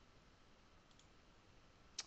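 Near silence, with a faint click about a second in and a sharper single computer mouse click at the very end as a field is selected from a drop-down list.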